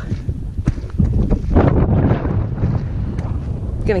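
Wind buffeting an action camera's microphone: an uneven low rumble, with a few scattered knocks.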